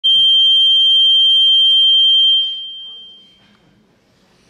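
A loud, steady high-pitched tone that holds for over two seconds and then fades away over about a second.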